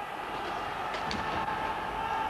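A field-gun traveller, a steel pulley block, running along the wire across the chasm: a steady rolling rumble with a held whine that sets in about half a second in.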